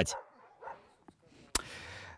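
Dogs in a shelter enclosure, heard faintly. About one and a half seconds in there is a sharp click, followed by a brief even hiss.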